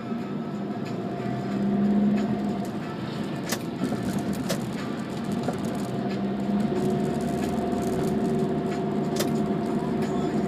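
Steady engine and tyre hum heard inside a taxi's cabin as it drives along a city road, with a brief swell about two seconds in and a couple of sharp clicks.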